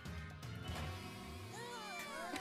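Soft cartoon soundtrack music with low sustained notes. Near the end come several high, sliding, wavering squeaky sounds.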